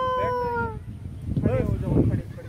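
A long shout held on one steady pitch, falling slightly and trailing off under a second in, followed by brief bits of voice near the end.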